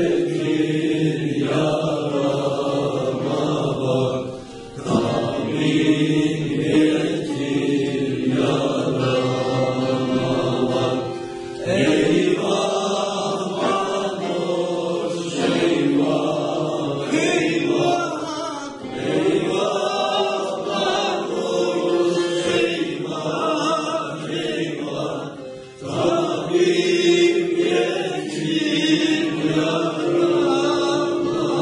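A small choir of voices singing a Turkish folk song to bağlama (long-necked saz) accompaniment, in phrases broken by short pauses.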